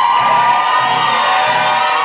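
Live band playing blues, with the dancers' crowd cheering and whooping over the music.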